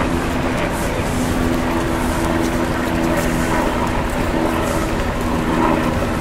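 City street traffic: a steady din of vehicles with a low, even engine hum under it.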